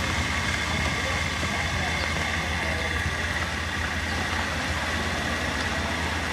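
Vehicle engine idling steadily: an even low hum with a faint steady high whine over it.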